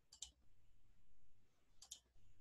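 Computer mouse clicking: two quick double clicks about a second and a half apart, with near silence around them.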